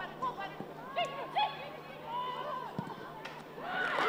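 Live match sound at a women's football game: scattered shouts and calls from players and a small crowd, then a swell of cheering near the end as a goal goes in.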